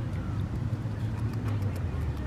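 Steady low rumble of road traffic, with faint crisp clicks of a beaver chewing on grass close by, most frequent in the second half.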